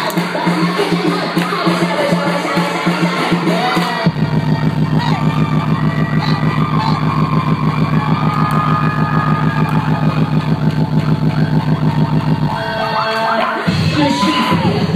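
Hip-hop dance music played loud over a venue sound system, with a steady fast beat. A deep bass line comes in about four seconds in and drops out briefly near the end.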